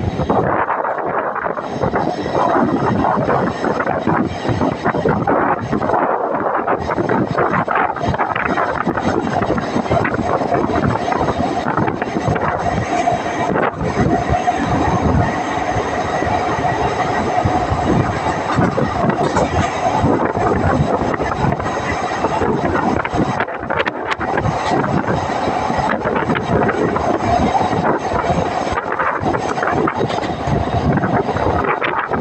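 Running noise of a Mariazeller Bahn narrow-gauge electric train heard on board: steady wheel-on-rail rumble and rush of air, with a thin steady whine for several seconds in the middle.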